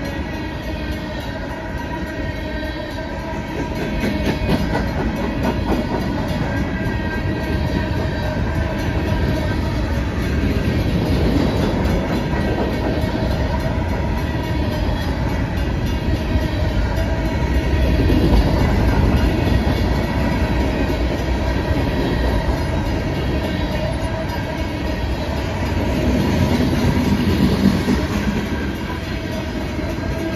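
Freight cars of a long CSX mixed freight train rolling past: a steady rumble of steel wheels on rail with clickety-clack from the rail joints, swelling louder a few times as the cars go by.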